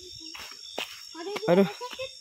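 Steady high-pitched chorus of night insects such as crickets, with a few short soft clicks.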